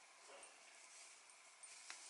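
Near silence: faint rustling of a silk twilly scarf being knotted around a handbag handle, with one light click near the end.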